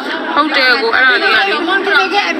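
Only speech: people talking, voices going on without a break.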